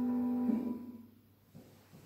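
The last held chord of a hymn accompaniment on a keyboard, cutting off about half a second in and dying away into the room.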